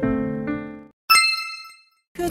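Slow piano music plays its last notes and fades out, then a single bright ding chime sounds about a second in and rings away, the quiz cue for the answer reveal.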